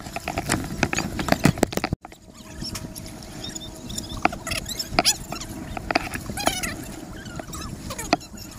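Sea water lapping and splashing against a waterproof camera held at the surface, with many sharp clicks of water hitting the housing. The sound drops out for an instant about two seconds in.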